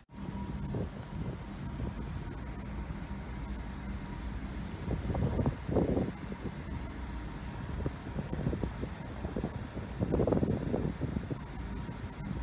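Anti-piracy fire hose nozzle jetting seawater over a ship's side in a test run, a steady rushing spray mixed with wind. Wind buffets the microphone in louder surges about five and ten seconds in.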